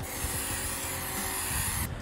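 Aerosol can of 3M Hi-Strength 90 spray adhesive hissing steadily as it sprays, cutting off just before the end.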